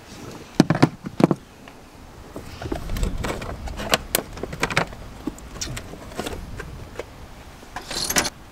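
Scattered clicks and knocks of hands working on plastic clips, fittings and wiring in a car's engine bay, with a low rumble for a second or two in the middle.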